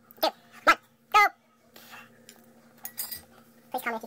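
Three short vocal sounds from a person, about half a second apart, in the first second and a half, then more brief vocal sounds near the end, over a faint steady hum.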